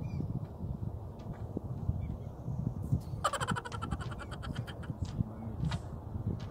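Wind buffeting the microphone as a steady low rumble, with a rapid rattle of clicks a little past halfway that lasts about two seconds.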